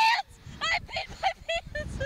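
A person laughing hard in a rapid string of short, high-pitched bursts.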